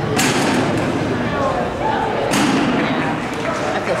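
Agility teeter board banging down under a dog's weight just after the start, followed by a second sharp thump a little over two seconds later. People talk throughout.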